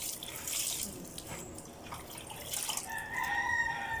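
Water splashing and sloshing as clothes are hand-washed and wrung over a basin. Near the end a rooster crows, one long call that is the loudest sound.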